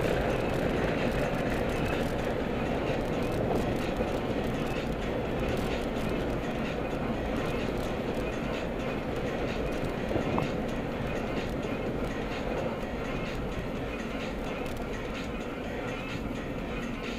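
Steady road and engine noise heard from inside a moving car's cabin, with a short knock about ten seconds in.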